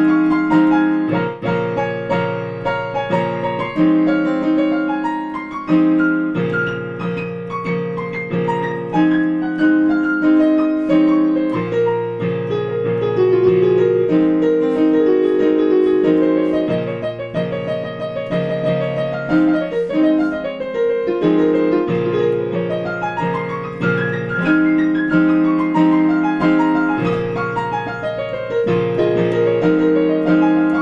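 Digital piano playing a gentle piece: held chords changing every second or two under a melody, with flowing runs of notes in places.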